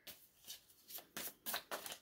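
Tarot cards being handled: a handful of short, faint papery flicks and slides as cards are drawn off the deck and laid out on the table.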